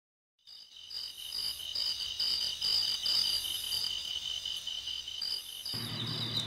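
Several crickets chirping together in a steady, pulsing chorus at a few high pitches, cutting in suddenly about half a second in after a moment of dead silence.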